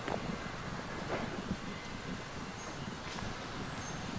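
Steady outdoor background noise with a low rumble, and a few faint rustles.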